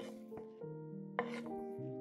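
Chopped green onions spilling from a cutting board into a glass bowl: two short rustling pours, one at the start and one a little past a second in. Background music plays throughout.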